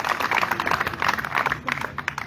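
A small crowd applauding. The clapping thins to a few scattered claps near the end.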